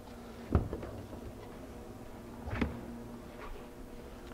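Hatchback cargo floor panel being lowered over the spare-tire well, closing with a sharp knock about half a second in, then a softer knock about two seconds later, against faint room hum.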